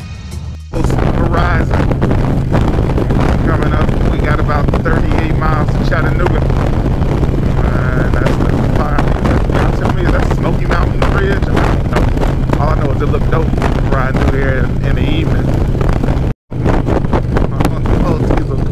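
Harley-Davidson V-twin touring motorcycle cruising at highway speed: a steady low engine drone with wind rushing over the microphone. It starts abruptly about a second in as a music track ends and drops out briefly near the end.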